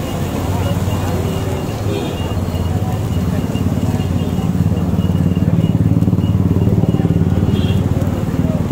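Street noise dominated by a motor vehicle engine running close by, a steady low hum that grows louder about halfway through, over faint background voices.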